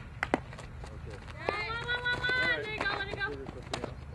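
A person's long shout on the field, held on one pitch for about a second, starting about a second and a half in. Sharp smacks of a softball against leather gloves come twice just after the start and once more near the end.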